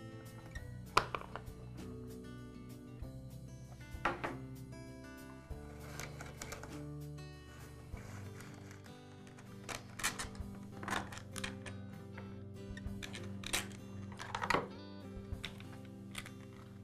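Background music over a few sharp clicks and knocks of plastic parts as a backpack blower's air filter cover, filter and filter base are unclipped and lifted off.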